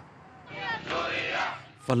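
A crowd of protesters shouting and chanting together, many voices at once, swelling about half a second in and fading just before the narration resumes.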